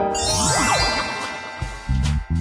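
A shimmering, tinkling chime effect starts suddenly, with sweeping glides up and down in pitch, and fades after about a second and a half. Background music with a low beat takes over near the end.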